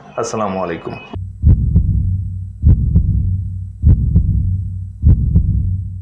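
Heartbeat-like sound effect: four deep double thumps (lub-dub), about 1.2 s apart, over a low steady hum, fading out near the end.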